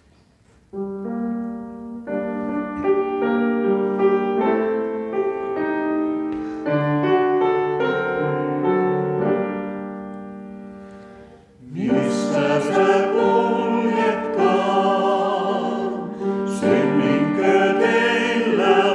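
A piano plays an introduction of about ten seconds. Then, about twelve seconds in, a mixed vocal quartet of two men and two women comes in, singing together in harmony.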